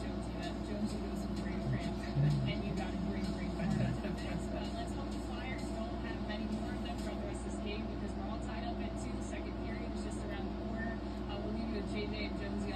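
A televised hockey broadcast playing from a TV set. Faint commentary sits over a steady low hum.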